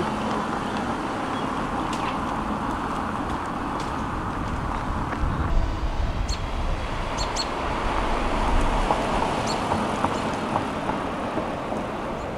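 Nissan Z Proto's twin-turbo V6 running at low speed as the car drives off, a steady engine and tyre sound over road and traffic noise, swelling slightly near the end.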